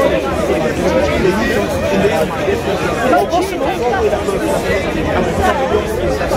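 Speech: several people talking over one another, the words hard to make out on a poor-quality recording.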